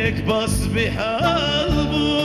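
Male singer singing a slow, ornamented melody with wavering, bending notes, accompanied by a wooden reed pipe and other instruments.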